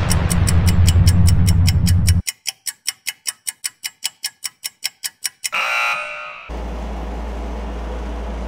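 Edited intro soundtrack of a clock-like ticking, about four or five ticks a second, over a low drone that cuts off about two seconds in. The ticking goes on alone, then gives way to a short bright burst of sound and a steady low hum near the end.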